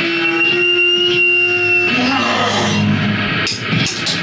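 A rock band's electric guitars holding a chord that rings on steadily for about two seconds, then breaking off into loose, scattered playing with a few knocks and voices.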